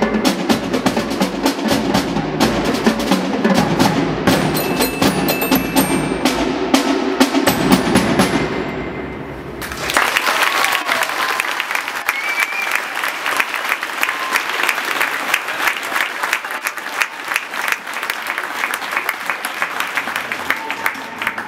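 Marching band drum feature: snare drums, tenor drums and bass drum playing fast rudiments, with marching glockenspiel notes ringing through. About halfway through the deep bass-drum hits drop out after a short dip, and a lighter, brighter clatter of rapid strikes carries on.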